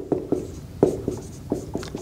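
Marker writing on a whiteboard: a quick, uneven string of short strokes and taps as words are written.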